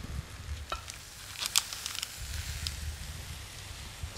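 A few light clicks and knocks of a wooden spoon against a ceramic plate as creamed leeks are spooned out, over a faint steady hiss.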